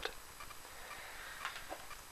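A few faint, short ticks against quiet room noise.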